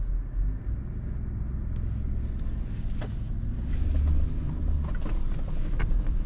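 Nissan Patrol's 5.6-litre petrol V8 driving over sand, heard from inside the cabin: a steady low drone that swells about four seconds in, with a few light knocks.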